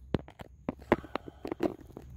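Irregular sharp clicks and taps, about eight in two seconds, from a phone being handled and set in place under a car.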